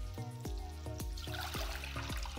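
Background music with a steady, plucked beat, and water pouring from a glass measuring cup into a pot starting about halfway through.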